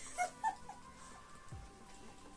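A dog gives two short, high whimpers about a quarter second apart near the start, over soft background music.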